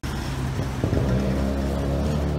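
Engine of a road vehicle running close by, its pitch stepping up about a second in as it accelerates.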